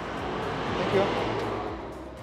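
A pickup truck passing close by on the street: its tyre and engine noise swells to a peak about a second in, then fades away.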